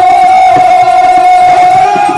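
Live Rajasthani folk-theatre music: one long held note lasting nearly two seconds, over repeated drum strokes.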